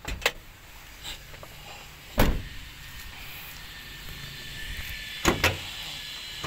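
Car door shut firmly about two seconds in, the loudest sound, with a lighter click just after the start and two quick knocks close together near the end.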